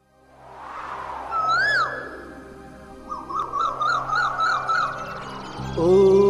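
Opening of a song's backing track: a whooshing swell fades in, then a bird call slides up and down once about a second in, followed by a quick warbling bird trill from about three to five seconds. Near the end a low steady instrumental drone comes in as the music starts.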